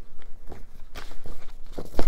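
Sticker sheets being handled: about half a dozen short, soft taps and rustles spread across two seconds.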